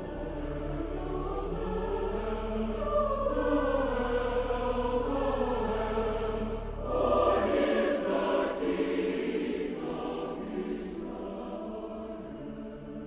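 A choir singing long held notes over background music, swelling louder about seven seconds in as the low bass drops away.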